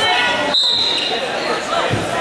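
Referee's whistle, one short blast about half a second in, starting the wrestling bout, over steady crowd chatter echoing in a large gym.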